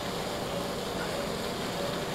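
Steady, even background noise of an operating room, with no distinct clicks or tones.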